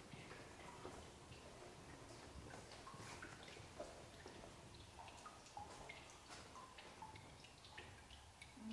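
Faint, irregular drips of water falling into shallow cave pools, each drop a short plink, several a second, with a low hum of cave ambience underneath.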